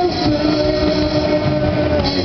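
Live rock band playing through a PA, electric guitars holding long sustained notes.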